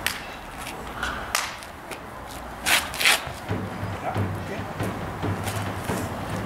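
Quick swishes and slaps of clothing and hands as two martial artists grapple in a Chin Na lock, about four sharp ones in the first half. A low steady hum comes in about halfway through.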